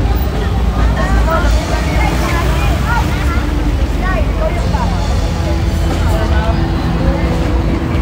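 Busy street traffic: car and motorcycle engines idling and pulling away with a steady low rumble, under people talking close by. A steady low hum comes in about halfway through.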